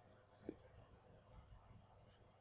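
Near silence: room tone, with a short faint breath-like hiss followed by a brief soft blip about half a second in.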